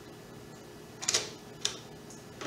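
DSLR shutter released by hand: two sharp mechanical clicks about half a second apart, a little after a second in.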